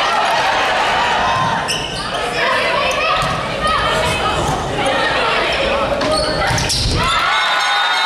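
Indoor volleyball rally in a large echoing hall: players call and shout over each other while the ball is struck several times with sharp slaps. A loud hit near the end is followed by excited high-pitched shouting as the point ends.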